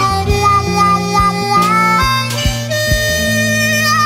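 Slow blues instrumental passage with a harmonica playing the lead over bass and drums; from about three seconds in the harmonica holds long notes with vibrato.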